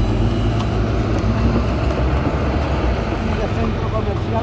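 Steady low rumble of city road traffic, with voices in the background.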